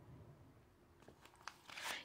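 Faint handling of tarot cards: a few soft clicks and rustles about a second in as a card is laid on the cloth and the next one is drawn from the deck.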